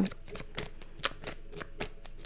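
A tarot deck being shuffled by hand: a rapid, irregular run of soft card clicks.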